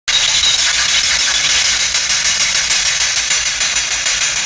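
Ghost box radio scanning through stations: a loud, steady hiss of static with a rapid flicker as the tuning sweeps.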